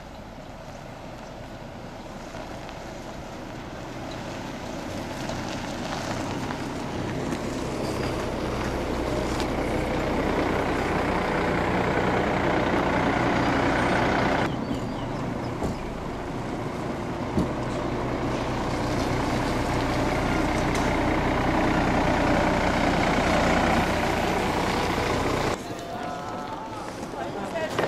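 Hyundai coach bus engine running as the bus moves, getting steadily louder over the first half. The sound breaks off briefly about halfway through and the engine sound picks up again.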